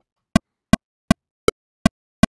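Pro Tools click plugin metronome playing at 160 BPM: short pitched clicks evenly spaced, close to three a second, with a differently voiced accent on the first beat of the bar about one and a half seconds in.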